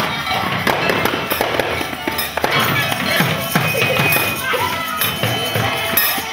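Children beating hand-held frame drums and tambourines, many scattered hits at no steady beat, with children's voices mixed in.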